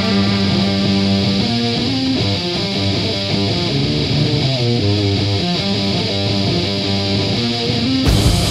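Instrumental rock music: a guitar plays a melodic line of quick, changing notes over bass, with no singing.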